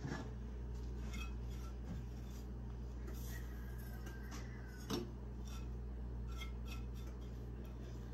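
Dried herbs rustling as they are tipped from a ceramic bowl and pushed through a metal canning funnel into glass jars, with light clinks and one sharper click about five seconds in. A steady low hum runs underneath.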